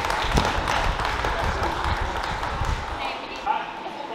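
Shouting and cheering voices in a gym over heavy thuds as a strongman log is dropped and settles onto the pads after a clean and press.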